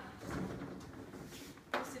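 A person moving at a chalkboard, with a short scratch of chalk on the board about one and a half seconds in as an equals sign is started. A woman's voice says a word just before the end.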